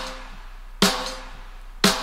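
Solo snare drum track from a mix playing back, layered with a big clap sample and drenched in long plate reverb for an 80s disco-style snare: a hit right at the start and two more about a second apart, each with a ringing, slowly fading reverb tail.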